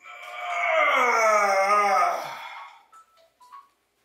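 A man's long, drawn-out wordless vocal moan, sliding down in pitch over about two and a half seconds before fading out.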